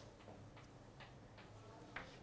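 Chalk on a blackboard, heard faintly: a few short, sharp ticks of the chalk tapping and scraping as an equation is written, over a low room hum.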